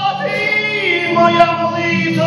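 A man singing full-voiced with his own strummed acoustic guitar. A held sung note glides downward about a second in.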